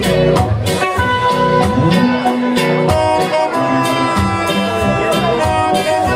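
A live ska band playing an instrumental passage: electric guitar and bass over a steady beat, with long held melody notes.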